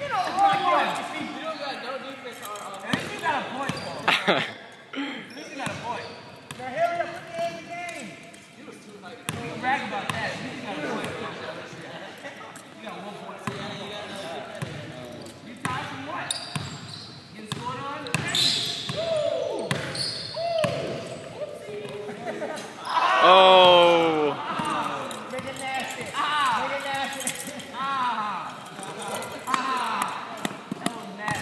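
Basketball bouncing on a gym floor in repeated knocks, with players' voices and one loud shout partway through.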